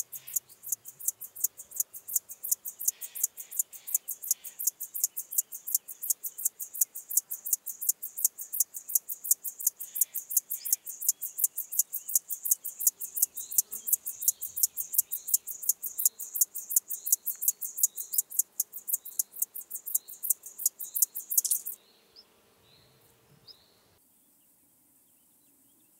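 Locomotive grasshopper (Chorthippus apricarius) stridulating: a long, even train of rapid, high-pitched chirps, about four to five a second, that stops abruptly near the end.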